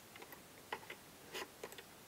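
Faint scattered clicks and ticks of banana-plug patch cables being handled and plugged into the jacks of a Buchla 281e quad function generator.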